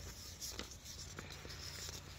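Faint background noise: a steady low hum with light hiss and a few soft clicks.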